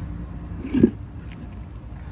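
Steady low engine hum, with one short dull thump a little under a second in.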